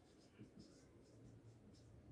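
Faint strokes of a marker pen writing on a whiteboard, a few short scratches over a low room hum.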